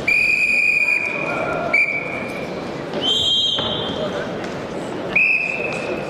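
Wrestling referees' whistles over the murmur of a crowd in a large sports hall. There are four blasts: a long one at the start, a short one about two seconds in, a higher-pitched one about three seconds in, and another long one about five seconds in.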